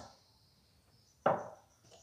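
A single short knock of a hard object on a tabletop about a second in, otherwise near silence.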